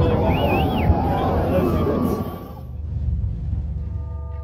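Deep rumble of a building demolition as the collapse's dust cloud rolls out, with people's voices over it in the first second; the rumble dies away about two and a half seconds in.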